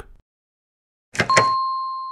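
Two quick clicks about a second in, then a single ding that rings on and slowly fades: a cartoon chime sound effect signalling 'go' as a door's light turns green.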